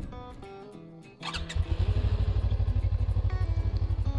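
Suzuki V-Strom 250's parallel-twin engine starting a little over a second in and settling into a steady, evenly pulsing idle, with background music underneath.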